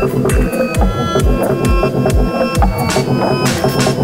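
Electronic bass music from a dubstep and grime DJ mix: a busy beat of deep kicks that slide down in pitch, with sharp hi-hat and snare hits and short synth notes over it.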